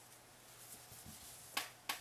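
Two short, sharp creaks from a creaky chair, about a third of a second apart near the end, over soft rustling of hands and yarn.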